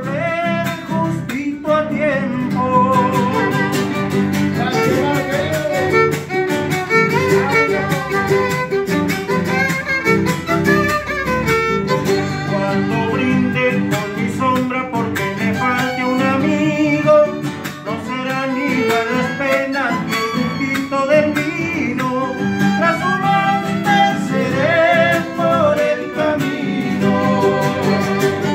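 A chacarera, an Argentine folk dance song, played live on a bowed violin and strummed acoustic guitars, with a man singing.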